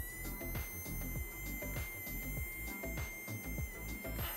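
Mini DC motor running on two AA batteries: a high whine rises in pitch as it spins up at the start, holds steady, then cuts off abruptly near the end. Background music plays underneath.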